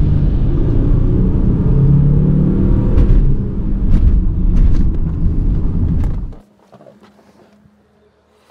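Audi A4 3.0 TDI's V6 diesel engine and road noise heard from inside the cabin while driving, a loud steady rumble whose engine note swells about two seconds in. The sound cuts off abruptly a little over six seconds in.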